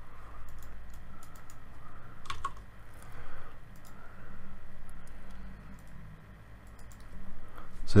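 Scattered computer keyboard taps and mouse clicks as numbers are typed into a software dialog, over a low steady hum.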